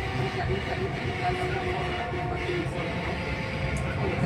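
Dubai Metro train heard from inside the carriage while running: a steady rumble with a faint steady whine.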